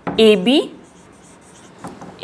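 Dry-erase marker writing on a whiteboard: a few short, faint scratchy strokes starting about a second in, after a brief spoken word.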